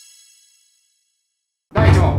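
Ringing tail of a bright, many-toned chime sound effect on a logo card, fading out about half a second in. Near the end a loud sound starts suddenly.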